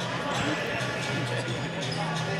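Basketball bouncing on a sports-hall floor under a steady murmur of crowd voices in a large, echoing hall.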